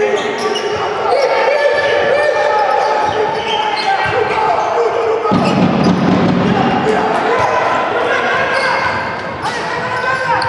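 Basketball game on a hardwood court in a large, echoing gym: the ball bouncing, sneakers squeaking as players cut, and players and spectators calling out.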